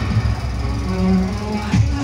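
Film soundtrack music played loud over an open-air cinema's loudspeakers, heavy in the bass, with a held low note about halfway through.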